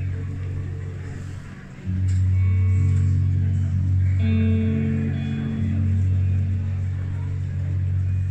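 Slow instrumental intro from a live band: a bass guitar holds long low notes under keyboard chords, with the chord changing about every two seconds.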